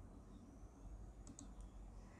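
Near silence: low room hum with a few faint clicks a little past halfway.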